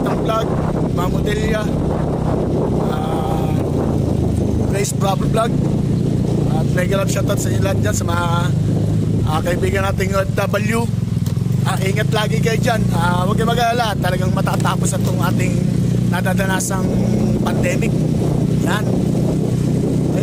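A man talking over the steady running of a motorcycle engine while riding, with road noise underneath.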